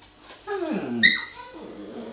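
Akita and miniature schnauzer puppy tussling: a dog cry that falls steeply in pitch, then a sharp high yelp about a second in, the loudest sound, followed by quieter whimpering.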